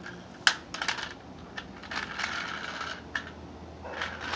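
Small toy car clicking and clattering against concrete as it is handled and pushed: a sharp knock about half a second in, a few quick clicks after it, then a scraping, rattling stretch in the middle.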